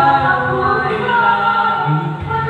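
A man singing karaoke through a handheld microphone, holding long drawn-out notes.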